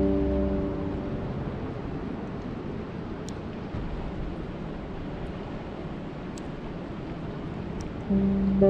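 Steady rain falling on open lake water, an even hiss with a few faint, sharp drop ticks. Soft music fades out in the first second.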